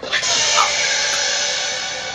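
A sudden, loud, sustained synthesizer chord stinger from a horror film's score, holding steady on many tones at once.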